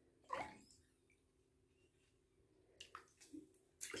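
Near silence broken by faint drips and small splashes as a hand dabbles in and lifts out of bathwater: one short splash about half a second in, and a few small drips near the end.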